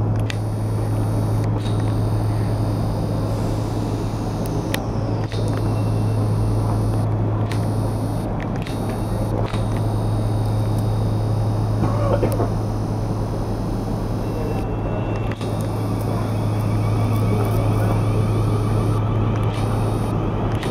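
South Western Railway Class 450 electric multiple unit moving slowly out of the station: a steady low hum under a continuous rumble, with a faint high whine that falls a few seconds in.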